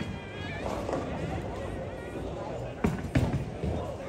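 Bowling alley din: background chatter, with sharp knocks and clatters of bowling balls and pins starting near the three-second mark. A brief high squeal sounds right at the start.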